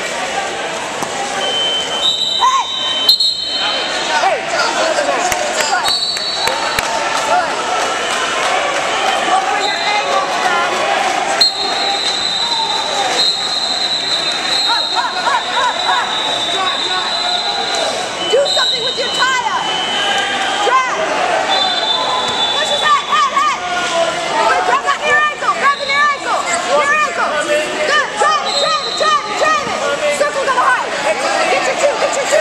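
Busy wrestling-tournament gym: many voices shouting and talking over one another, busier near the end, with occasional thumps. Long high-pitched signal tones sound several times, each lasting a second or more.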